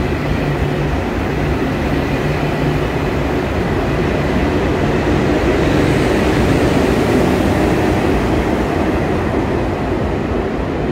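KTX high-speed train pulling out along the platform, a steady rumble of wheels and running gear that grows a little louder past the middle as the rear power car goes by. A low hum underneath dies away about halfway through.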